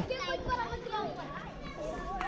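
A crowd of children's voices chattering and calling out over one another.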